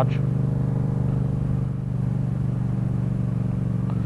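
Yamaha FZ-07's parallel-twin engine running at a steady cruise. Its note holds even, with no revving or gear changes.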